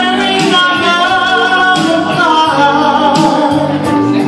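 A man singing a 1970s cover into a microphone over a karaoke backing track, holding long notes that waver in pitch.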